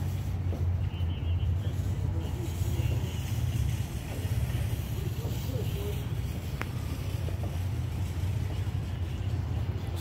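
Steady low rumble of road traffic and outdoor background noise, with no distinct events.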